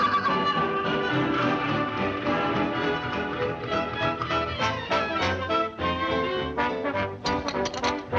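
Orchestral cartoon score with brass to the fore, playing a lively, busy passage. Near the end it breaks into a run of short, sharp accented hits.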